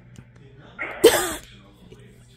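A single short, sharp burst of voice and breath from a person, about a second in, with a strong rush of air.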